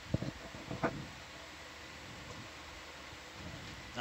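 Two short vocal sounds in the first second, the tail of a laugh, then a steady low room hiss with a faint hum.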